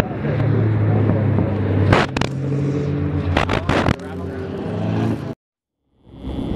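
Car engines and exhausts running as cars drive slowly past, each a steady low note that changes pitch as another car comes by, with several sharp cracks about two seconds in and again around three and a half seconds. The sound cuts off abruptly near the end.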